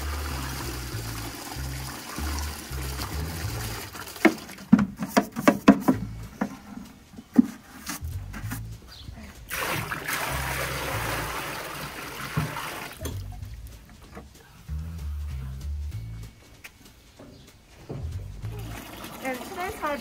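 Dirty water poured from a plastic bucket into a trough, a splashing stream lasting a few seconds about ten seconds in. Before it comes a run of sharp knocks and clatter from the bucket being handled, all over background music.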